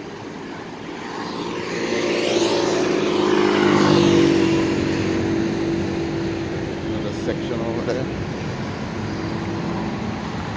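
City road traffic at a busy intersection: a nearby motor vehicle's engine grows louder to a peak about four seconds in, then fades, over the steady hum of other passing cars.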